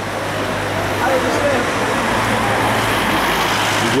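Busy city street traffic: cars on the road with a steady low engine hum under the general noise of the street.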